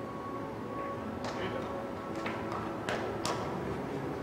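Several sharp clicks of carom billiard balls knocking together, uneven and about a second apart at first, then closer, the last two the loudest, over a steady hall background with music.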